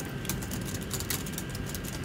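Quick irregular run of light key clicks on a MacBook keyboard, typing in a web address, over a steady low room hum.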